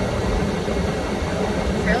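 Steady low hum inside the cabin of an idling Chevrolet Trailblazer, the vehicle standing still.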